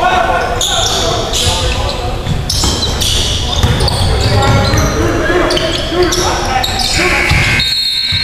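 Basketball being dribbled on a hardwood gym floor during a game, with players calling out, all echoing in the gym.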